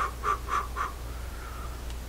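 A man's voice muttering four short syllables, then a longer drawn-out one, as he thinks through a problem without forming words.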